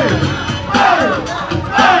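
Break-beat music through loudspeakers with a steady drum beat, and a crowd shouting over it, loudest at the start and again near the end.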